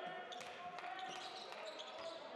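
Faint basketball-court sound in a large hall with no crowd: a steady hum, faint voices and a few light knocks of a ball on the court.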